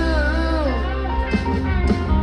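Live rock band playing, with electric and acoustic guitars over bass and keyboards. A long wavering high note bends downward under a second in while the band plays on.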